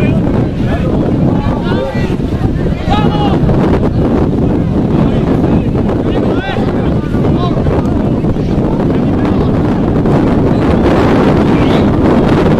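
Heavy wind buffeting the microphone, with distant shouted calls from players on the field, loudest in the first few seconds and again about six seconds in.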